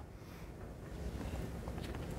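Quiet room tone in a lecture hall: a low, steady rumble with faint rustle, a little louder after the first second.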